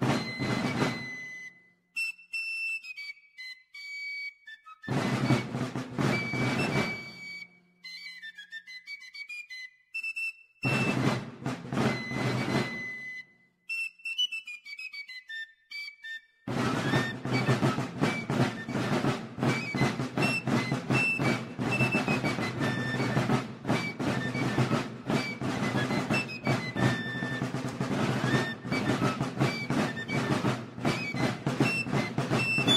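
Fife and drum march music: a high, shrill fife tune with drums that come in and drop out every few seconds. From about halfway the drums play on without a break.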